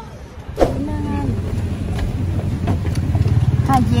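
Car engine and road noise heard from inside the cabin: a steady low rumble that starts with a cut about half a second in.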